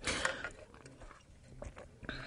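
Faint mouth and breath sounds of a person drinking through a straw: a short breath at the start, then a few soft clicks of sipping near the end.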